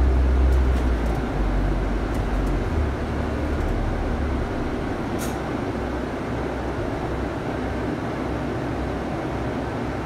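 Running noise heard inside a moving double-decker bus: a steady engine and road rumble, deepest in the first couple of seconds and then easing a little.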